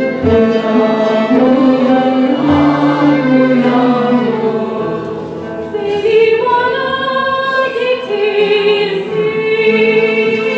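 Mixed choir and female soloist singing a Turkish art song (şarkı) with a small traditional ensemble accompanying, taking up a long held note near the end.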